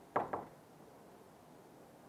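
Two quick knocks about a fifth of a second apart, then quiet room tone.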